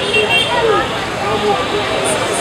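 Voices talking over a steady background of street and traffic noise.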